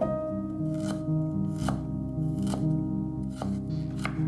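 Knife blade knocking sharply on a bamboo cutting board as ginger is cut, about once a second, over background music.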